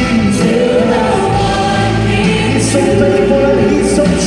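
Gospel choir singing live with music behind it, voices holding and moving through sustained notes, heard from the audience seats of a large auditorium.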